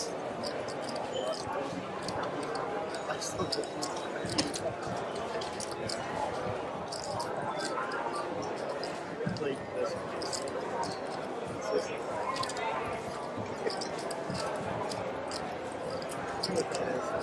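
Casino table ambience: a steady murmur of background voices, with scattered light clicks and taps as playing cards and clay chips are gathered up and new cards are dealt.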